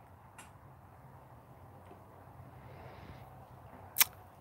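Faint background noise with a low steady hum, a soft click just after the start and a sharper click at the very end.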